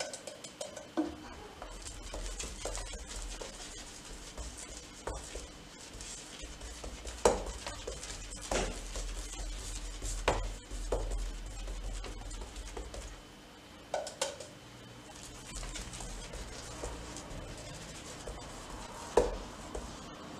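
Paintbrush strokes laying water-based satin paint onto a door panel, a soft brushing hiss, broken by several sharp clinks and knocks as the brush is dipped and tapped against the paint container.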